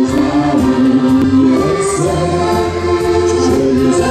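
Live French accordion dance-band music: several accordions playing sustained melody and chords together over electric guitar and a steady low bass line.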